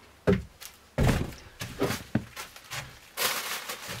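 Thuds and knocks on a wooden plank floor: a broom being set down and footsteps on the boards, the two loudest knocks about a third of a second and a second in. From about three seconds in, a foil bag starts crinkling.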